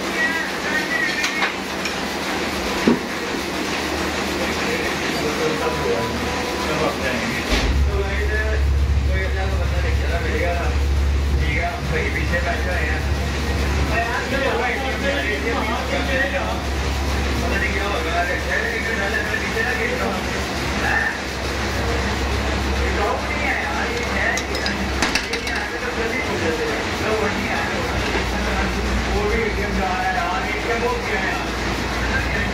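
Indistinct background voices, with a low steady hum that comes on suddenly about seven seconds in, drops out briefly near the end, then comes back.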